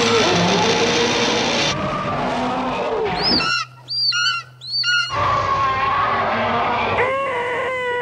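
Film sound effects: a giant ape's roar, then three shrill screeching bird-of-prey calls in quick succession, then a held wailing tone near the end.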